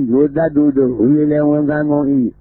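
A man reciting Buddhist scripture in Burmese in a chant-like cadence. After a few quick syllables he holds one drawn-out syllable at a steady pitch for about a second.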